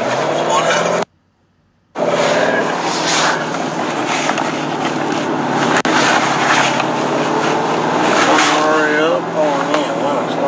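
Steady rushing noise and low drone of a car on the move, with men's voices over it. The sound cuts out for just under a second about a second in, then resumes.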